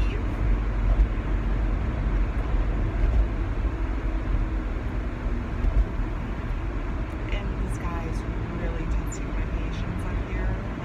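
Steady road and engine rumble heard inside the cabin of a moving car.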